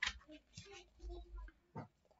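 Faint handling noise from a picture book's pages being turned: a click at the start, soft rustles and low bumps, and a short sharp rustle near the end.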